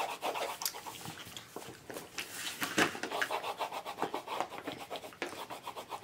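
Wax crayons scribbling back and forth on paper over a wooden tabletop: a rapid rubbing scratch of quick strokes, several a second, loudest near the middle.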